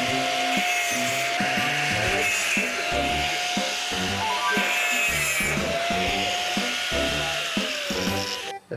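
Handheld electric saw cutting steel wire mesh: a steady motor whine that sags briefly several times as the blade bites into the wire. Background music with a steady bass beat runs underneath.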